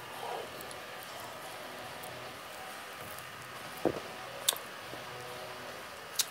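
A man drinking from a glass beer bottle, with only faint room tone around him; a soft knock about four seconds in and a short, sharp click just after.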